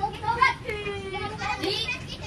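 Children's voices in the background, talking and calling out in quick, high-pitched bursts.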